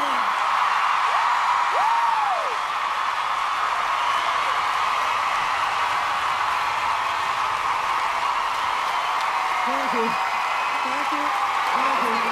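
Large audience cheering and clapping as one steady wash of noise, with a single rising-and-falling whoop about two seconds in.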